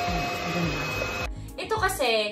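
Cordless stick vacuum running with its motorized brush head: a steady whine over a rushing hum that cuts off suddenly about a second in, followed by speech over background music.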